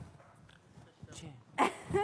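Speech only: one short, loud exclamation near the end, over faint room noise.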